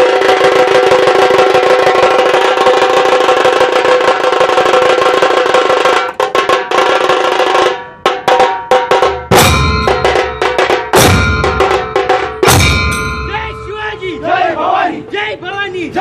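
Dhol-tasha troupe playing dhol drums and zanj (brass hand cymbals): a dense, fast, continuous roll with ringing cymbals for about six seconds, a brief break near eight seconds, then loud, spaced heavy drum strokes.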